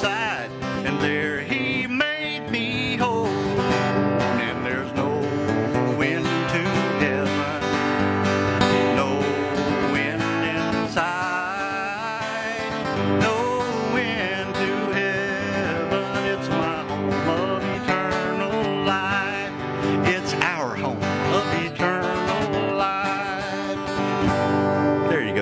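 A man singing a country gospel song and accompanying himself on a steel-string acoustic guitar, strummed and picked.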